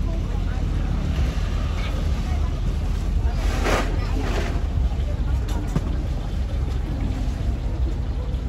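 Busy outdoor street-market ambience: a steady low rumble with the indistinct chatter of a crowd over it, and a brief louder burst about halfway through.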